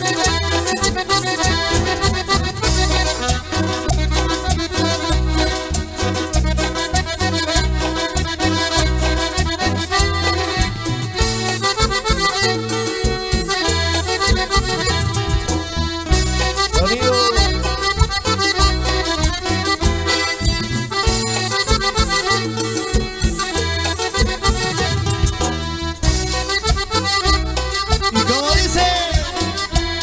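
Live band playing accordion-led Latin American dance music, an instrumental passage with no singing, over a steady regular bass beat.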